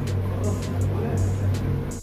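Water glugging and splashing from a large plastic jug being poured into a plastic tank, over a loud, steady low hum of laundry machinery.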